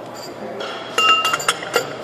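Metal clinking from a torque wrench and large socket being handled and fitted to a wheel hub's axle nut. A few sharp clinks come about a second in, one of them ringing briefly.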